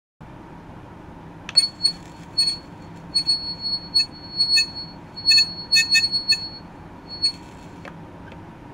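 Handheld ultrasonic probe with its tip on a metal plate, giving off irregular high-pitched chirps and buzzes as it vibrates against the surface. There are short and longer bursts of varying length, starting about one and a half seconds in.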